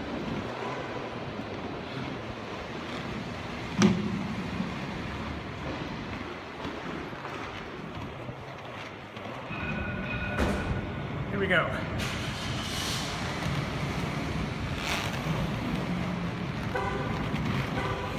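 Seba FR1 inline skates on 80 mm wheels rolling over smooth concrete, with wind on the microphone, louder about halfway through as the speed picks up. A sharp click about four seconds in, and a short two-tone beep about ten seconds in.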